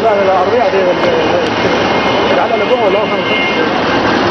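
Men's voices shouting, their pitch rising and falling, over a dense, steady roar of crowd noise.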